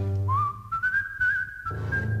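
A person whistling a tango melody as a single clear line. The line rises about a third of a second in, then is held with a slight waver. The orchestra drops out underneath and comes back in near the end.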